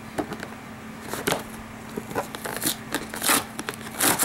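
Packing tape and cardboard of a mailing box being slit and torn open: irregular scratchy rips and crinkles, the loudest about three seconds in.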